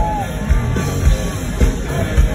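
Live rock band playing loudly through a stadium sound system, with a kick drum beat about twice a second and a sliding melody line above it.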